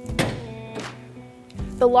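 Push-button lock on an aluminum truck-bed toolbox releasing with a sharp click, then a second, weaker knock as the lid springs open on its own, over background music.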